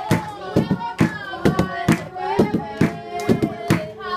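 Two hide-headed drums beaten with curved wooden sticks in a quick repeating rhythm of about three strokes a second, together with hand clapping and a congregation singing.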